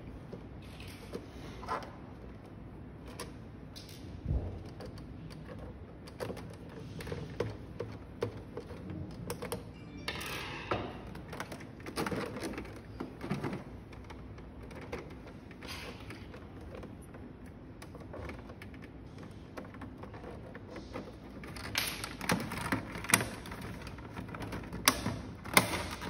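Irregular small clicks and taps of a screwdriver working screws out of a device's housing, with the screws and parts being handled. The clicks come busier about ten seconds in and again near the end.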